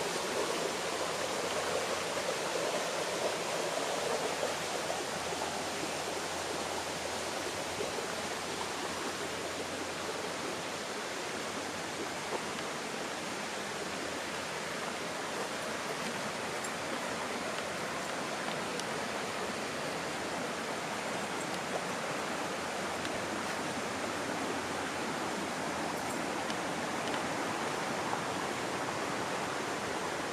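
A stream rushing steadily, a continuous even wash of flowing water.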